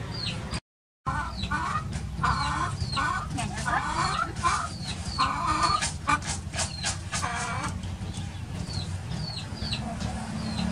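Chicken clucking in a run of short calls, over repeated high, short falling chirps and a steady low hum. There is a brief silent gap about half a second in.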